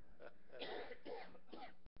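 A man clearing his throat a few times, faintly, with a brief cut-out in the audio just before the end.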